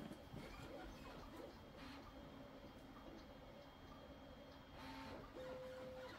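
Near silence: room tone with a few faint, soft knocks.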